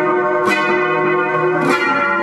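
Electric guitar playing dense, sustaining chords that ring on and overlap. A new chord is struck about half a second in and again near the end.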